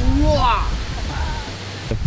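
A person's brief drawn-out vocal exclamation that rises then falls in pitch, over a steady low rumble of noise and faint background music.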